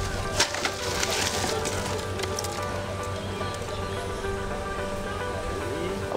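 Background music with steady held tones, with a few short clicks in the first second or so.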